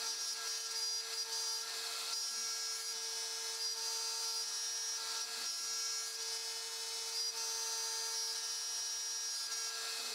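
X-Carve CNC router spindle running at speed with a steady high whine, its small bit cutting a pocket into a plywood board. The cut re-machines a single pocket to the correct depth.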